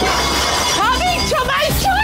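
Glassware and dishes crashing and shattering as a dinner table is overturned, the crash dying away in the first half second, with women shouting over it.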